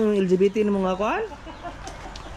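A person laughing in long, drawn-out held notes, ending in a rising squeal a little over a second in.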